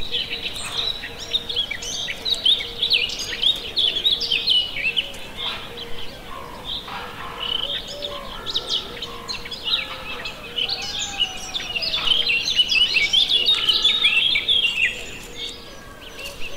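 A group of Eurasian penduline tits calling: thin, high chirps and twitters, dense and overlapping, busiest a couple of seconds in and again in the last few seconds.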